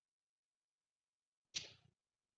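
Near silence, broken near the end by one short, sudden rush of noise that dies away within half a second.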